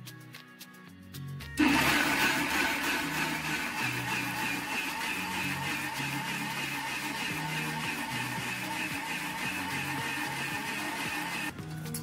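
Electric mixer grinder grinding coconut pieces into a thick paste. It starts suddenly about one and a half seconds in, runs steadily with a high motor whine, and stops shortly before the end.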